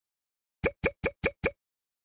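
Five quick cartoon plop sound effects in a row, about five a second, in an animated logo intro.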